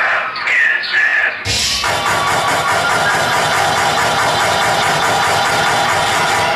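Audience shouting and whooping, then about a second and a half in, loud backing music for a stage dance routine cuts in suddenly and plays on with a steady beat.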